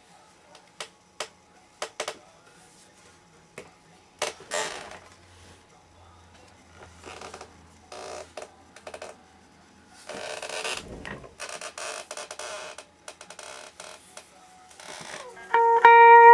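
Handling noise from a homemade cigar-box electric guitar: scattered clicks and knocks, then stretches of rubbing and scraping as it is turned over and moved about. Near the end, picked guitar notes start ringing out.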